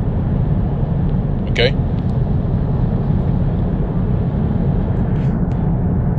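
A steady low rumbling noise, with one spoken 'okay' about a second and a half in.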